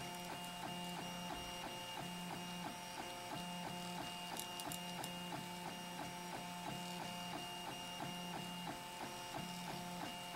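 MendelMax 3D printer's stepper motors whining as the print head traces the layer, in short pitched tones that start, stop and change pitch several times a second. A steady high tone runs underneath.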